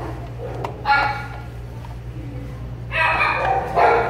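Dogs in kennels barking: one bark about a second in and a run of barks near the end, over a steady low hum.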